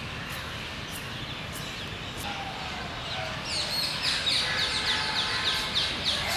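Outdoor ambience with a bird calling: from about three and a half seconds in, a rapid run of short, high, falling chirps, several a second, over a steady background hiss.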